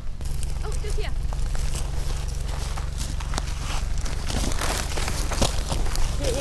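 Footsteps and brush rustling in low scrub, with many short crackles, over a steady low hum.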